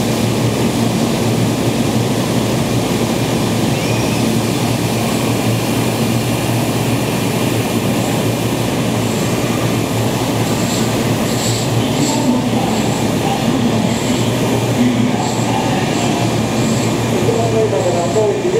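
Kintetsu 22000 series electric train standing at an underground platform, its on-board equipment giving a steady hum and rush that echoes in the station. A few short high ticks are heard in the latter half.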